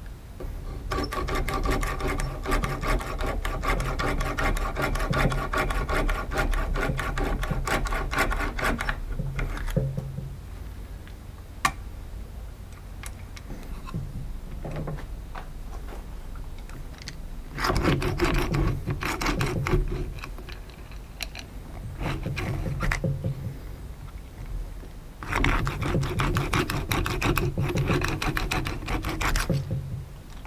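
Hand-pumped Archimedes drill whose twisted square shaft spins the bit back and forth as it bores into a wooden board: a fast, whirring mechanical rattle for about eight seconds. After a quieter stretch, several more bursts of similar rapid rattling follow.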